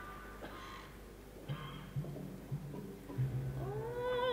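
Quiet orchestral passage between a soprano's phrases in an opera aria: a few short, soft low notes, then near the end the soprano's voice slides up into a held note.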